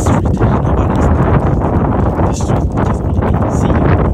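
Heavy wind rumble on a phone microphone, with irregular crunching steps on fresh snow.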